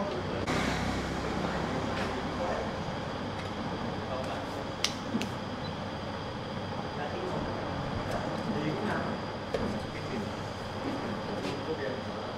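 Automatic hydraulic corner-crimping machine for aluminium window frames running with a steady mechanical noise while a mitred profile corner is set and clamped in it, with a brief hiss about half a second in and a sharp metallic click near the middle.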